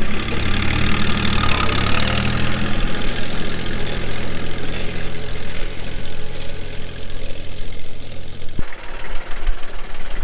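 Ford 1720 compact tractor's diesel engine running steadily under load as it pulls a four-row planter past. The engine note cuts off suddenly about eight and a half seconds in, leaving a rougher, less tuneful rumble.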